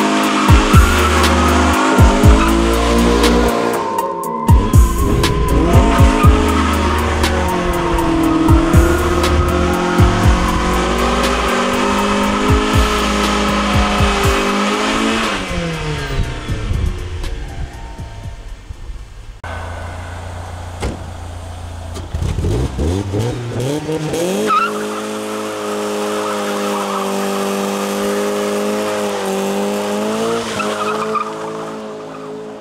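Mazda Miata doing a burnout: engine revving up and down and tires squealing, mixed with a music track.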